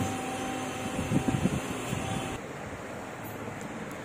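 Steady mechanical room hum with faint handling noise; the hum drops and thins abruptly about two and a half seconds in.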